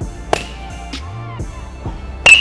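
A baseball bat hits a side-tossed ball with one sharp crack about a third of a second in, over a steady background music track.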